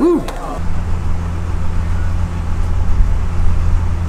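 A man's short "woo", then a steady low hum of road traffic that carries on outside.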